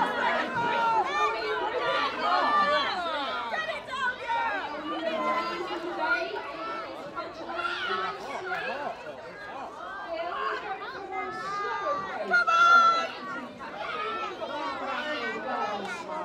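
Onlookers chattering, many voices talking over one another outdoors.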